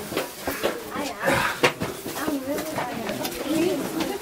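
Indistinct voices of several people talking, with many short clicks and knocks.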